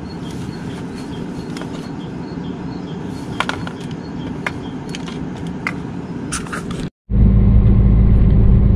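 Sharp little clicks and knocks of jars and food packets being handled in a plastic crate, over a steady low background rumble. About seven seconds in this cuts off and is replaced by the loud, steady low drone of the truck's engine heard inside the cab while driving.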